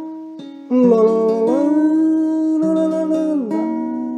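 Acoustic guitar music with sustained plucked notes. A louder held tone comes in under a second in, glides up, and slides back down near the end.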